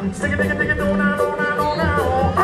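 Live reggae band playing, with bass and drums under a sung vocal line that holds and bends its notes.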